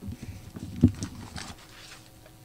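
A few soft knocks and one louder low thump a little under a second in, with faint rustling: people changing places at a lectern, bumping it and its microphone and handling papers.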